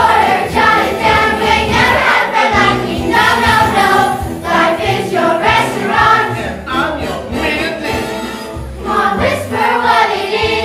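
A group of voices singing a musical-theatre song over instrumental accompaniment.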